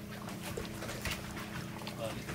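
A steady low mechanical hum with a few faint light clicks as a wooden spoon scoops salad from a small ceramic ramekin.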